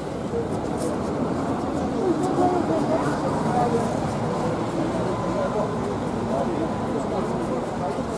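Background chatter of a crowd, many voices mixed together with no single clear talker, over a steady low rumble of traffic.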